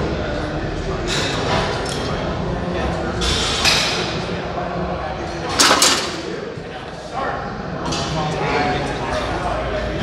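Metal clanks of a loaded barbell row bar and its plates in a busy gym, the loudest just before six seconds in as the bar is set down, with other knocks at about one, three and a half and eight seconds. Indistinct voices of other gym-goers run underneath.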